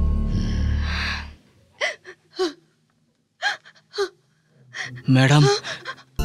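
Background film music fades out about a second in. A woman's short gasping sobs follow, four brief catches of breath, then a longer, louder sob near the end.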